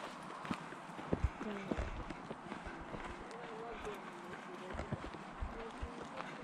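Footsteps crunching on a dirt forest trail, irregular knocks, with faint voices talking quietly now and then.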